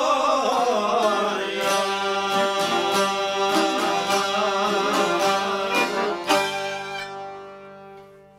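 Albanian folk ensemble of violin, accordion and long-necked plucked lutes finishing a song: a sung phrase at the start gives way to instrumental playing. About six seconds in they strike a final chord that rings and fades away.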